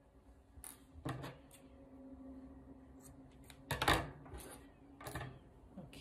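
Handling noise from hands working a crocheted acrylic-yarn piece on a wooden table: scattered soft rustles and light knocks, the loudest a bump about four seconds in.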